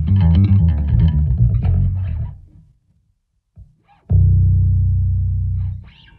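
Five-string electric bass played through a Blackstar Unity Elite U700H head and U115C 1x15 cabinet: a quick run of notes that fades out about two seconds in, a brief gap, then a single low note struck and held, slowly dying away.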